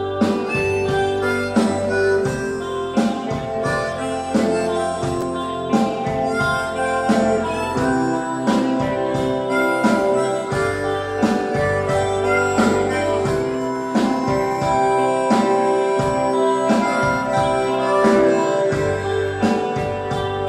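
Live rock band playing an instrumental break: held lead notes over guitar and a steady drum beat.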